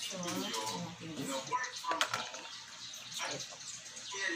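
Quiet talking with no clear words, with one sharp click about halfway through.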